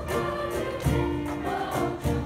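Children's choir singing in unison with accompaniment, and a low drum beat falling about once a second.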